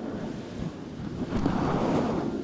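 Close rustling and rubbing of hands and robe cloth near the microphone, swelling louder in the second half.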